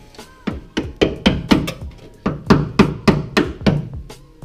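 A hand tool striking again and again at the rust-holed rear wheel arch of a Honda Civic, about four knocks a second with a short break midway, knocking at Bondo body filler packed over rust holes.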